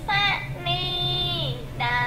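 A high, child-like voice chanting Khmer verse to a sung melody in the kakagati metre, one note held for about a second then sliding down, a short break, and a new phrase starting near the end. A steady low hum sits beneath it.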